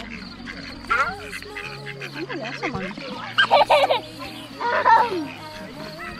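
Mallard ducks quacking at close range in a few short bursts, one a quick run of repeated quacks.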